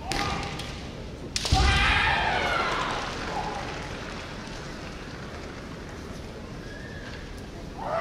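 Kendo shouts (kiai) echoing in a large hall: one call at the start, then a sharp crack of a strike followed by a long shout that falls in pitch and dies away over about two seconds, and another short shout near the end.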